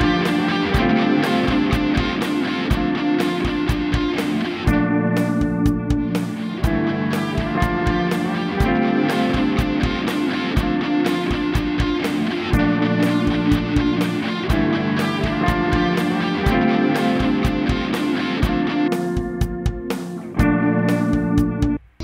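Two looped electric guitar tracks playing back from a BOSS RC-500 Loop Station in a steady rhythm. The higher guitar layer drops away twice, about five seconds in and again near the end, and comes back each time as its track fader is pulled down and raised. The playback stops abruptly just before the end.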